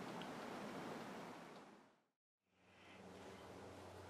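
Near silence: faint room hiss that drops out to dead silence about two seconds in, then returns with a faint steady low hum.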